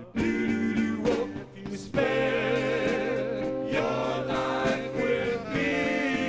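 Male doo-wop vocal group singing live in close harmony, lead and backing voices holding long notes with vibrato; the longest chord is held from about two seconds in until near the end.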